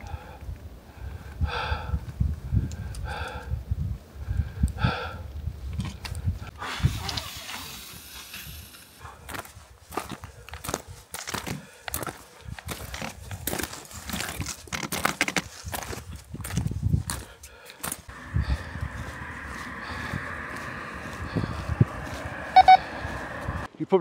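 Footsteps crunching and clattering on loose rock during a steep mountain descent, with indistinct voice sounds in the first few seconds. A steady rushing hiss takes over near the end.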